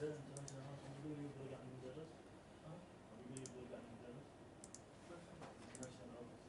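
Faint, indistinct conversation in a small room, with a few light, sharp clicks, some in quick pairs.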